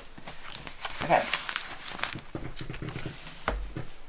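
Clear plastic cover film on a diamond painting canvas crinkling and crackling as hands flatten and smooth the canvas on a tabletop, with a dull thump near the end.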